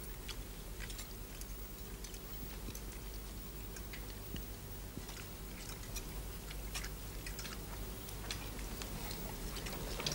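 People eating at a dinner table: faint chewing and irregular small clicks of cutlery on plates over a steady low hum.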